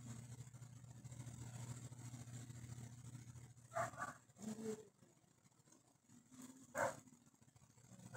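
Faint steady low hum of an open video-call microphone line, dropping away about five seconds in, with a few short sharp sounds about four seconds in and again near seven seconds.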